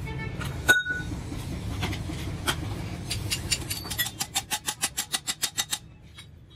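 Light hammer strikes on a steel muffler end cap: a fast, even run of ringing metal taps, about six a second, in the last two seconds, which stops abruptly. Before it come a few scattered metal clinks over low background noise.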